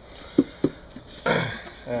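Two quick taps on a pine hive box, then a short throaty throat-clearing from a man.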